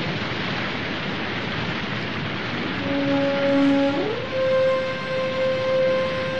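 Cartoon soundtrack: a steady rushing noise like rain or falling water, with a held musical note that enters about three seconds in, slides up to a higher pitch a second later and holds.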